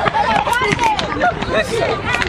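Several voices talking and calling out over one another, a lively group chatter with some high-pitched voices and scattered sharp knocks.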